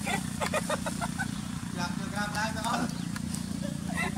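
Crinkling clicks of a plastic food bag being handled, then a goat bleating once for about a second in the middle, over a steady low hum.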